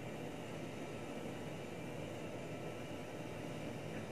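Steady background noise, an even low hiss and rumble with no distinct events.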